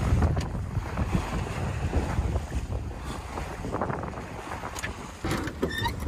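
Wind blowing on the microphone over water washing along a sailboat's hull under way. A man's voice begins near the end.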